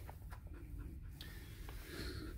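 Faint rain pattering on the van's windscreen and roof, heard from inside the cab over a low rumble, with a few light ticks.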